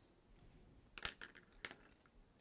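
Near silence: room tone with two faint clicks, about a second in and again half a second later, as a colored pencil is lifted off the paper and set down.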